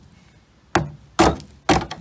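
A screwdriver jabbing three times, about half a second apart, into the rusted lower door skin and sill of a Chrysler VG Valiant, giving sharp knocks: the steel there is rusted through.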